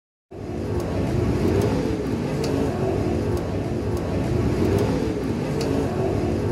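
Dirt-track race car engines running hard at speed, their pitches wavering as the cars pass, with sharp ticks every second or so.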